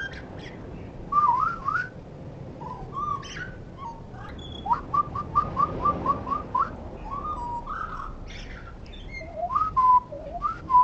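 Common blackbird song mixed with a person's whistled replies, played back with the pitch lowered by half. Short gliding whistled phrases, with a quick run of about eight rising notes in the middle and faint higher twitters.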